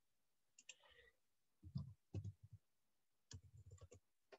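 Faint scattered clicks and low knocks over near silence, picked up on a computer microphone: a few light clicks about half a second in, two dull knocks around two seconds, and a quick run of low knocks near the end.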